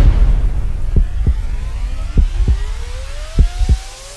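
Trailer sound design: the decaying tail of a deep boom, under which a thin tone rises slowly in pitch. Three pairs of dull low thumps, like a heartbeat, come about a second apart.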